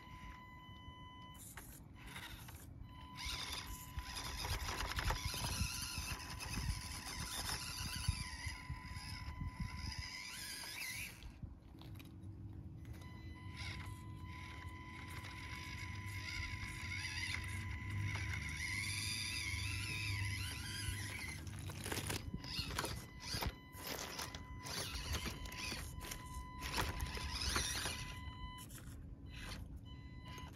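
Axial SCX24 micro crawler's small electric motor and gears whining in a steady high tone that cuts in and out several times as it is driven in short bursts up rock, with scratchy scrapes of the tyres and chassis on the stone.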